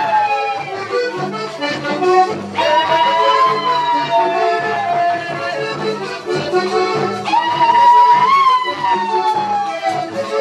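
Panamanian folk dance music led by accordion, with long held high notes that slide down in pitch three times over a steady rhythm.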